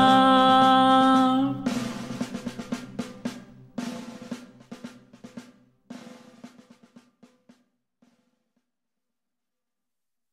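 A man's voice holds the final sung note of the carol, which cuts off about a second and a half in. A run of drum-like hits follows, growing quieter and dying away by about eight seconds.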